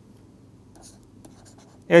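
Faint scratching and light tapping of a pen stylus on a tablet screen as handwriting is written, in short scattered strokes.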